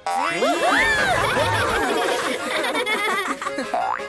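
Cartoon boing sound effects: a run of springy pitch glides bending up and down, ending in a quick rising glide, over background music.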